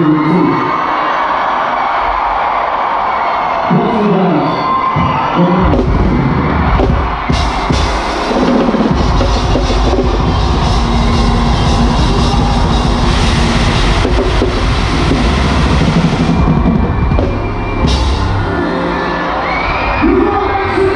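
Live concert: a crowd cheers, then about five seconds in the band comes in with a drum kit playing a driving beat, and the music runs on loudly under the crowd noise.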